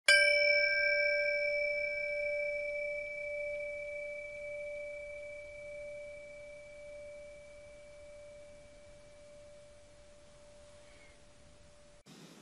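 A single struck bell-like tone rings out and slowly dies away over about twelve seconds. Its higher overtones fade within the first few seconds, and the low tone lingers to the end.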